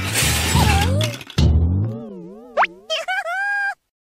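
Outro sound-effect sting: a crashing, shattering noise, then a cartoonish tone that wobbles rapidly up and down with a quick rising whistle. It ends on a held electronic tone that cuts off suddenly near the end.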